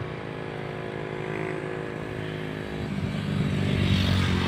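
A road vehicle's engine running with a steady hum, growing louder near the end as it comes closer.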